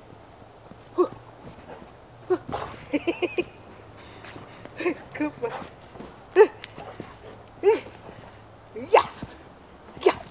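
Dog barking and yipping in short excited bursts while playing, about eight or nine calls with a quick cluster of yips near the start; the loudest bark falls a little past the middle.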